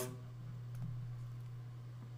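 Quiet room tone with a steady low hum and two faint clicks a little under a second in.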